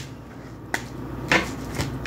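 Tarot cards being handled and laid down on a table: a faint sharp click a little under a second in, then a louder card snap past halfway.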